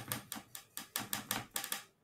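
Quick, light clicking and tapping, about seven taps a second, as a paintbrush works oil paint together into a grey mix on a palette.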